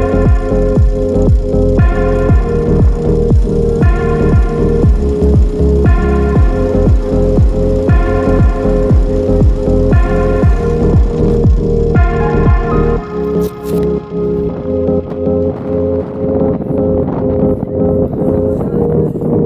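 Electronic background music with a steady beat and held chords that change about every two seconds; about thirteen seconds in the beat drops out and the chords carry on more quietly.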